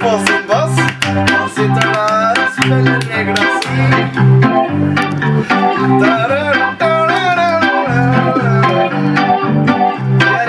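Synthesizer keyboard played with an organ-like sound: sustained chords and a melody line that bends in pitch, over steady changing bass notes with a running rhythm.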